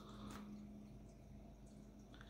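Near silence: room tone with a steady low hum and faint handling noise from fingers on a plastic minifigure.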